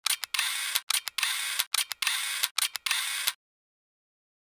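Logo-reveal sound effect: a choppy run of short, hissy, clicky noise bursts that start and stop abruptly, cutting off about three and a half seconds in.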